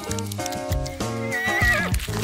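A horse whinny sound effect, a wavering call that falls away about one and a half seconds in, over background music.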